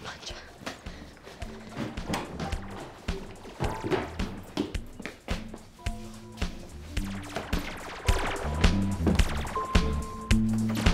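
Band music with drums keeping a regular beat, a stepping bass line and short keyboard notes. It gets louder about eight seconds in.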